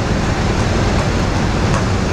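Steady loud engine drone of a river car ferry under way, with a low hum and a constant wash of wind and water noise.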